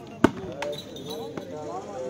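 A volleyball struck hard by hand in a jumping spike, one sharp loud smack about a quarter second in, followed by a couple of fainter knocks as the ball is played on.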